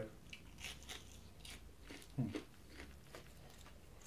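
A person chewing a mouthful of fried food: faint, irregular small clicks of chewing, with a short closed-mouth "hmm" about two seconds in.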